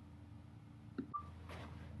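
Quiet pause in the narration: room tone with a steady low electrical hum, and a faint click about halfway through.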